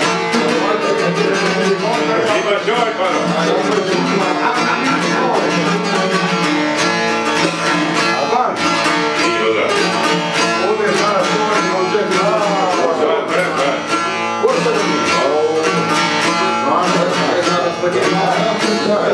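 Albanian folk tune played on two long-necked plucked lutes, a çiftelia and a sharki, with rapid, steady plucking and a continuous melody.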